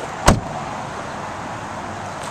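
A 2005 Toyota Corolla's car door shut once, a single sharp thud about a quarter second in, followed by steady outdoor background noise.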